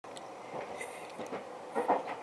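Steady running noise heard inside the passenger cabin of a JR West 283-series "Ocean Arrow" electric express train, with a few faint clicks. A man's voice begins just before the end.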